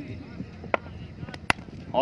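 Cricket bat striking a taped tennis ball: one sharp crack about one and a half seconds in, after two fainter clicks.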